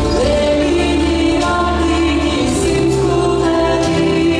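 Latvian folk-dance music with a choir singing over held instrumental notes and a bass line, played for a stage dance.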